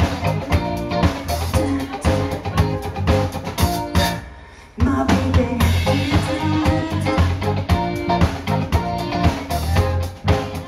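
Live rock band playing through a PA, with drum kit, electric bass, electric guitar and keyboard; the drums are prominent. About four seconds in, the band stops for under a second, then comes back in together.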